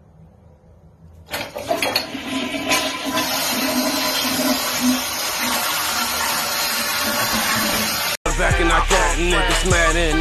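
A loud, steady rushing noise like running water starts about a second in and stops abruptly after about seven seconds. Hip-hop music with rapping and heavy bass follows near the end.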